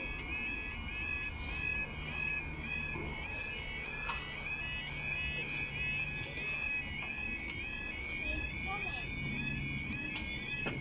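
Level crossing warning alarm sounding a repeating two-tone yelp, about two cycles a second, as the barriers come down: the warning that a train is approaching. A low steady hum runs underneath.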